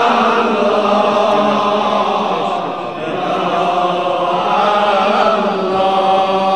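A man's voice chanting a long, drawn-out melismatic note on 'ya' in an Arabic Islamic supplication (munajat), sung into a microphone. The loudness dips slightly about halfway through, then the note swells again.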